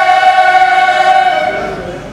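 Mixed choir of men and women holding one long sustained chord, which fades away about a second and a half in.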